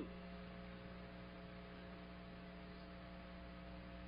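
Steady low electrical hum with a faint hiss underneath, unchanging throughout.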